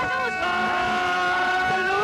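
Audio played in reverse: a steady held tone of several pitches that does not change, with garbled, backwards shouting voices under it.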